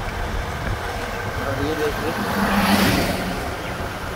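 Road traffic: a motor vehicle passes close by a little past the middle, its sound swelling and then fading, over a steady low rumble.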